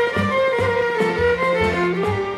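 Instrumental passage of a Yugoslav folk song: a violin plays the melody over a steady bass beat of about two notes a second.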